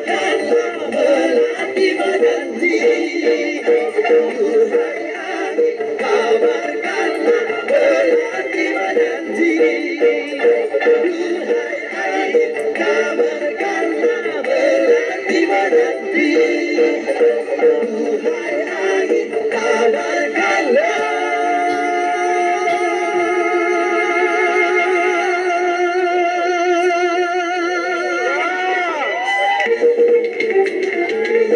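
Amplified live song with a vocal line over a band accompaniment. About two-thirds of the way in, a long held note with a strong vibrato comes in and sustains until just before the end.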